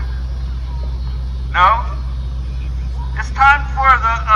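A man's voice through a megaphone calling out short phrases, once about one and a half seconds in and again near the end, over a steady low rumble.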